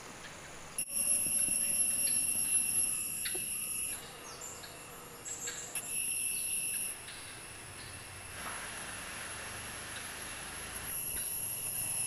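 Insects chirring: a steady high-pitched drone that comes in three bouts, starting and stopping abruptly, with a few faint bird chirps in the gaps.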